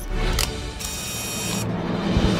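A low music bed with a short mechanical whirring sound effect about a second in, lasting under a second, used as a transition between programme segments.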